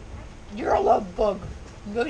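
Short, high-pitched vocal sounds that glide up and down in pitch, in two bursts starting about half a second in, with quiet before them.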